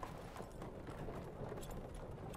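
Horse hooves clip-clopping faintly and repeatedly, heard from inside a horse-drawn carriage.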